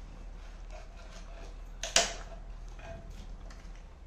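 A kitchen knife cutting and prying coconut flesh out of its shell, with small scrapes and clicks and one sharp knock about two seconds in.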